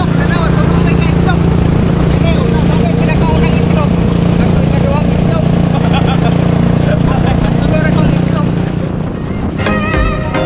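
Motorcycle engine of a sidecar tricycle running steadily under way, a continuous low drone, with men's voices over it.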